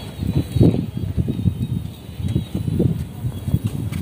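Wind buffeting the microphone outdoors: irregular low rumbles with no other clear sound.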